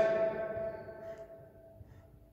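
A steady, bell-like ringing tone with several pitches, loudest as it begins and fading away over about two seconds.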